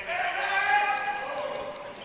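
A basketball being dribbled on a hardwood gym floor, with a voice on or near the court calling out, held for over a second.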